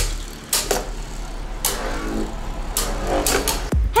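Logo-intro sound effects: several quick swishes over music, ending in a fast downward sweep.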